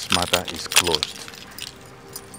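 A man's voice: a short exclamation lasting about a second, loud against the quiet around it.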